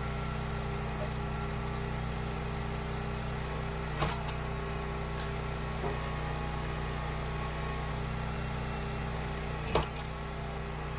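Gas engine of a Wolfe Ridge 28 Pro hydraulic log splitter running steadily. Two sharp knocks of wood on the steel splitter, one about four seconds in and a louder one near the end.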